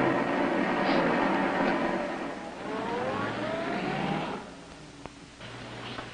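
Submarine periscope being lowered: a mechanical rush with a rising whine in its last second and a half, fading out about four and a half seconds in. A low steady hum follows.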